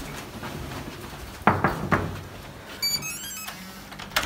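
Three sharp thumps about a second and a half in, then an electronic hotel keycard door lock playing its short run of beep tones as the card is read.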